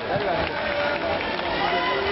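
Many people's voices overlapping: shouts, calls and chatter from a crowd around judo mats in a sports hall.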